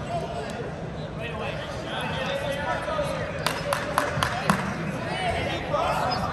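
Indistinct voices and chatter from people around a wrestling mat. A little past the middle comes a quick run of about five sharp smacks, the loudest sounds here.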